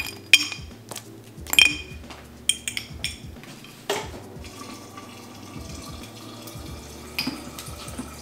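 A straw clinks against a glass jar a couple of times. From about four seconds in, a refrigerator door water dispenser runs water steadily into the jar, a continuous hiss with a faint steady tone.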